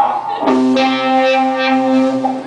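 Electric guitar sounding a sustained note that starts about half a second in and rings steadily for about a second and a half.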